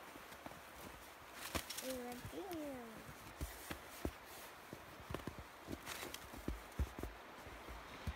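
Faint footsteps crunching in snow, irregular soft steps and knocks, with a brief falling whine-like call about two seconds in.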